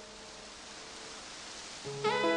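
Steady hiss under a held note of soft background music that fades out about a second in. New music comes in loudly right at the end.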